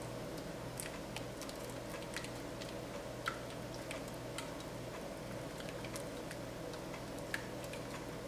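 Wire whisk beating a thick, pudding-like sauce in a stainless steel saucepan: faint, irregular clicks of the wires against the pan, over a steady low hum.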